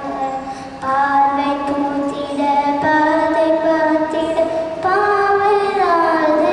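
A young girl singing solo into a microphone, holding long, steady notes that step to a new pitch about every two seconds.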